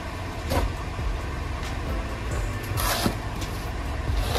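Snow shovel scraping over the paved path as snow is pushed and lifted: two short scrapes, about half a second in and near three seconds in, over a steady low rumble.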